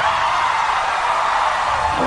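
Pop backing track in a short breakdown: the bass and beat drop out and no voice sings, leaving a steady hissing wash of sound in the middle range.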